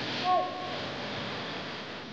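Sports-arena ambience: a steady wash of noise from the hall, with one short loud pitched call about a quarter second in that drops in pitch as it ends.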